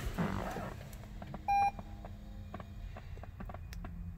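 A single short electronic beep from the 2021 Toyota Highlander Hybrid's dashboard about a second and a half in, as the hybrid system is switched on to READY without the petrol engine starting. A few faint clicks sound around it.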